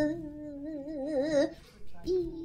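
A single voice singing long held notes with a slow wavering ornament, in a soundtrack. It breaks off about a second and a half in.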